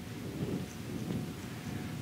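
Low, steady room rumble with no distinct events, the background noise of a large room picked up by the microphone.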